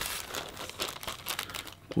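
Clear plastic zip bag crinkling as a hand rummages in it.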